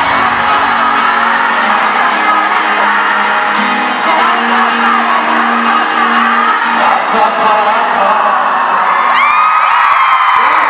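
Live pop music in an arena, with sustained held notes under a large crowd of fans screaming and cheering throughout. Several individual shrill screams rise near the end.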